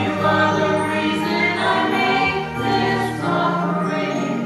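A small mixed choir of women's and men's voices singing a sustained, slow hymn-like song into microphones, accompanied by an electronic keyboard.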